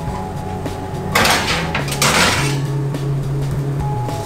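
Oven rack and foil-lined baking tray being handled: a metallic, rustling clatter lasting just over a second, starting about a second in.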